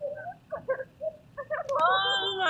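Audio run through a Max/MSP pfft~ frequency gate with slide~ smoothing of each bin: a thin, sparse sound of short separate tones blinking in and out, with the noise cut away. A voice comes in near the end.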